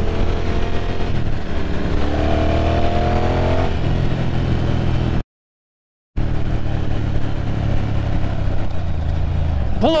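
Motorcycle engine running on the move, its pitch climbing as it accelerates between about two and four seconds in. The sound cuts out completely for about a second midway. A shouted voice comes in at the very end.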